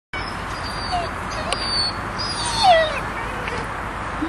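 A dog gives one short falling whine about two and a half seconds in, over a steady background hiss. A few faint, thin, high notes sound earlier.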